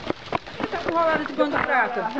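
Mostly a person talking, with a couple of short sharp clicks in the first half-second.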